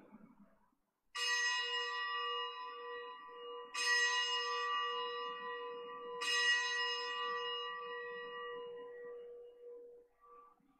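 A single bell struck three times, about two and a half seconds apart, each strike ringing on and fading into the next. It marks the elevation of the chalice just after the consecration at Mass.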